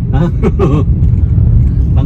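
Steady low rumble of a car on the move, heard from inside the cabin, with a person's short laugh in the first second.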